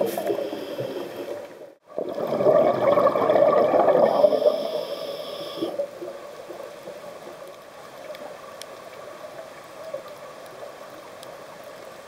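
Scuba divers' exhaled air bubbles gurgling and rushing past an underwater camera, loud with a brief break just before two seconds in, and a thin high hiss from a regulator toward the middle. About six seconds in it drops to a quieter steady underwater hiss.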